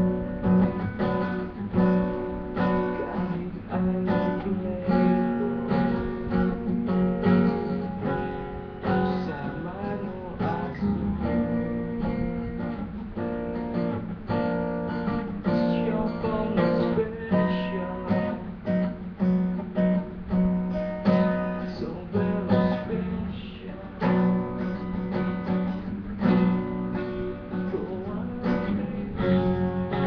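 Acoustic guitar being strummed, chords played in a steady rhythm.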